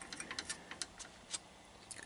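Faint, irregular light clicks of a screwdriver tip touching the metal screws and socket hardware on an amplifier's aluminium tube-socket plate, most of them in the first second and a half.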